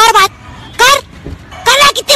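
Three short, loud voice sounds with sliding pitch over a faint steady background noise.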